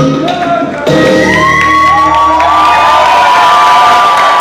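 Salsa music ends about a second in on a long held final note while an audience cheers and whoops.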